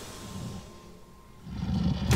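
Horror film score or sound design: a low drone fades to a quiet dip midway, then a deep rumble swells up near the end.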